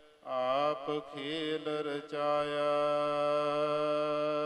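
A single voice chanting a line of a Gurbani hymn: a wavering melodic phrase in the first two seconds, then one long held note.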